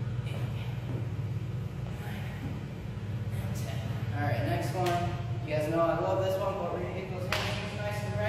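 A person's voice, indistinct and with no clear words, over a steady low hum, with a sharp knock about seven seconds in.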